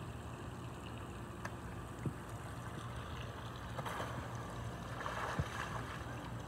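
A child sliding along a wet plastic slip'n slide: short rushes of noise about four seconds in and again just before the end, over a steady low outdoor rumble, with a couple of soft knocks.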